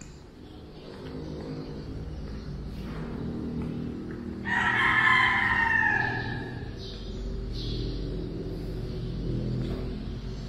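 A rooster crows once, about four and a half seconds in, for about two seconds, over a low steady hum.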